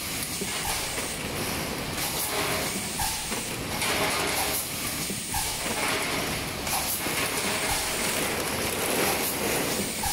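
Four-cavity full electric PET blow moulding machine running in production: steady mechanical clatter with recurring bursts of hiss.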